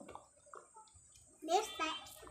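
Faint wet eating sounds of ripe mango slices being bitten and sucked, then a child's short spoken word about one and a half seconds in.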